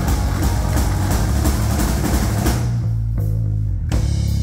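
Live rock band (distorted electric guitar, bass guitar and drum kit) playing loud. About two and a half seconds in, the drums and guitar drop out, leaving a low note ringing. A full-band hit comes back in right at the end.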